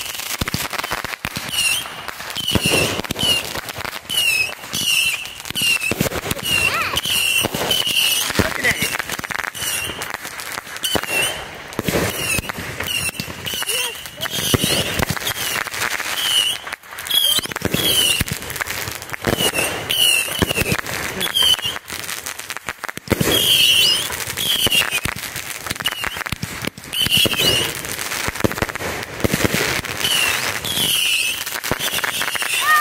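A consumer firework cake firing one shot after another, a steady run of sharp bangs and crackling bursts with no pause.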